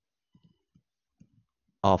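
Mostly quiet, with a few faint, scattered clicks, then a man's voice says "of" near the end.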